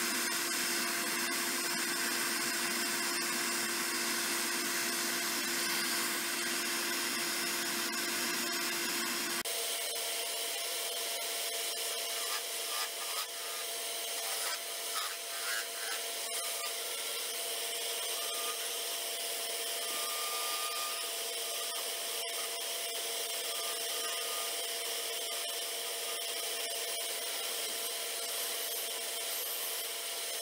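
A steady motor hum, which changes abruptly about ten seconds in to a wood lathe running at a higher steady pitch. A turning tool scrapes and cuts the spinning cocobolo blank, unevenly at first and then more steadily.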